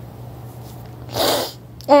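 A person sneezes once, a short noisy burst a little past the middle.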